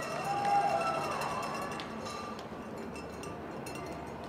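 Outdoor soccer match ambience: distant players' voices calling on the field in the first second or so, over a low steady background with a thin high tone.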